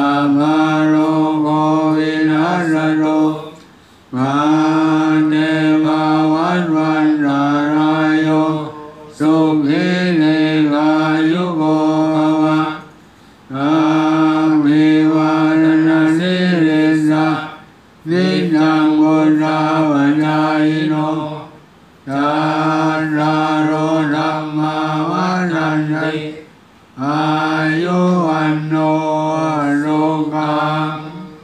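Buddhist chanting by monks' voices, recited on a nearly steady pitch in phrases of about four seconds, each followed by a short pause for breath.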